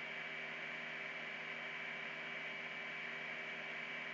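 Steady hiss with a low electrical hum and a thin, high, constant whine: the background noise of the recording itself, with no other sound.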